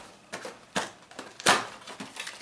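A cardboard 2022 Topps Series 1 Mega Box being handled and its lid opened: a few sharp cardboard taps and scrapes, the loudest about a second and a half in.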